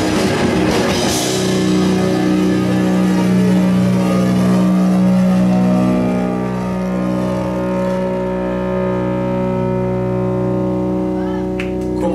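Progressive metal band playing live: drums and distorted guitars hit together for about the first second and a half, then the band holds one long sustained chord that rings on steadily, as at the close of a song.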